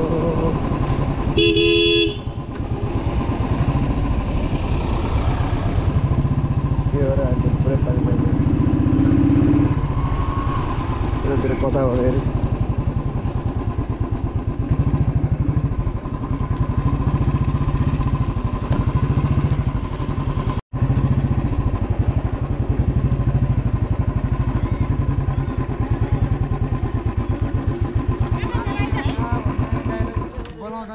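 Royal Enfield motorcycle engine running steadily while riding, rising and falling with the throttle. A short horn honk comes about two seconds in, and the sound drops out for an instant about two-thirds of the way through.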